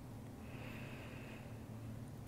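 A single soft breath through the nose, lasting about a second and starting about half a second in, over a faint steady room hum.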